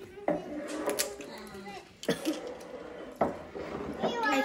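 Children talking quietly at a table, broken by about four sharp knocks, tableware being handled on the wooden tabletop.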